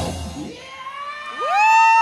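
A rock band's music cuts off and dies away, then about a second and a half in one loud voice lets out a long whoop that rises in pitch and then holds steady.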